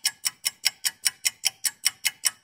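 Clock-ticking sound effect marking a countdown timer, with even sharp ticks at about five a second.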